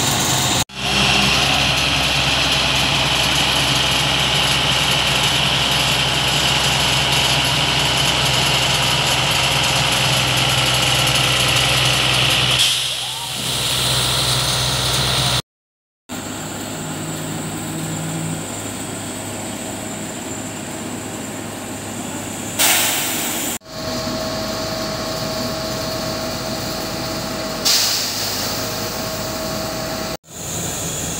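Diesel engine of a 140-tonne railway breakdown crane running steadily, with a high whine over the first dozen seconds. Later come two short bursts of air hiss about five seconds apart.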